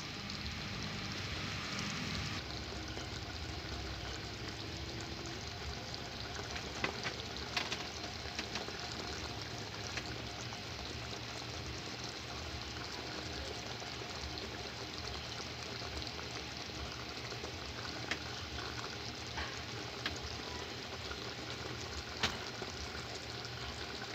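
Sweet-and-sour sauce bubbling and sizzling in a wok around fried tilapia. A metal spatula scrapes and taps the pan a few times.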